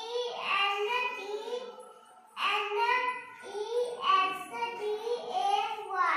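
A child's voice chanting in a drawn-out sing-song, spelling out letters aloud one by one, with a short pause about two seconds in.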